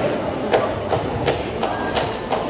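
Four sharp impacts, about a third of a second apart, over the background noise of a large sports hall.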